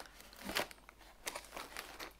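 Cardboard and packaging crinkling in several short rustles as a mini skein of yarn is pulled out through the door of a cardboard advent calendar.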